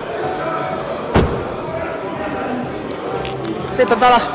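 A car door slammed shut once, about a second in, over a background murmur of voices and music in a large hall.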